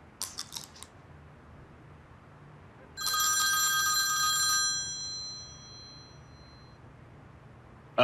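A phone ringing: four quick high chirps near the start, then about three seconds in a bright bell-like ring of several steady tones that lasts under two seconds and fades away.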